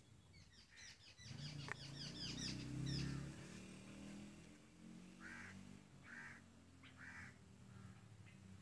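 Birds chirping: a quick run of high chirps in the first few seconds, then three short separate calls about a second apart, over a low steady rumble.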